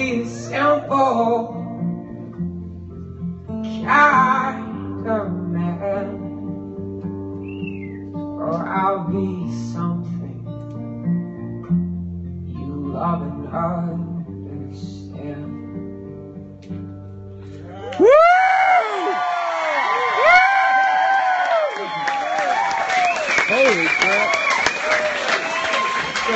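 A male singer with an acoustic guitar singing the last part of a song over held chords. About 18 seconds in the song gives way abruptly to audience cheering and applause, louder than the song.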